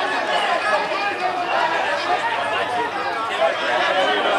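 Many voices talking and shouting over one another in a steady clamour: players celebrating a goal.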